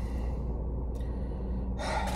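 Steady low hum inside a car cabin, with a quick breath drawn in near the end.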